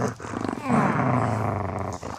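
A dog growling in play while tugging on a plush toy: a short growl, then a longer rough growl of about a second and a half that fades out.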